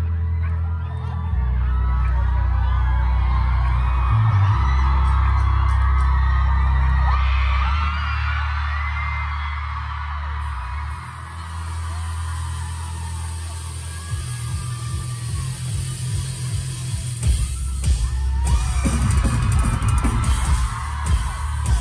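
Concert music through a big PA, heard from inside the crowd: deep sustained bass notes, with the crowd screaming and cheering over them. About fourteen seconds in, drums come in with rapid hits.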